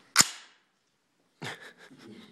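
AR-style rifle's bolt slamming forward, chambering a round from the magazine: one sharp metallic clack just after the start, dying away quickly.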